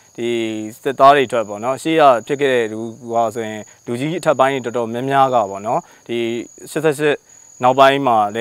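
A man speaking Burmese over a steady, high-pitched insect drone, typical of crickets in forest.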